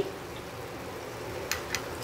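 Two light clicks of a spoon against a nonstick kadai about a second and a half in, as cream is added to the potato halwa, over a low steady hiss.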